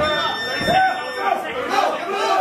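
Crowd of spectators talking and shouting over one another, many overlapping voices with no single clear speaker.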